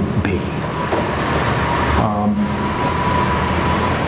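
Occasional speech from a voice, with a steady rushing background noise and a faint steady high tone beneath it.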